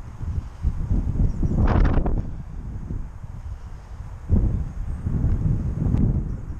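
Wind buffeting the camera's microphone in uneven gusts, with a brief louder noise about two seconds in.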